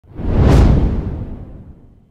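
Whoosh sound effect with a deep rumble for an animated logo reveal, swelling in the first half second and then fading away over the next second and a half.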